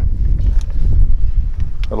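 Low, gusty rumble of wind buffeting the microphone, rising and falling unevenly.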